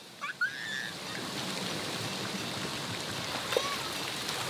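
Water jets at a splash pad spraying and splashing onto the pool surface, a steady rush that starts about a second in.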